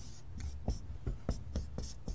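Dry-erase marker writing on a whiteboard: a run of short scratchy strokes with light taps as the marker meets the board.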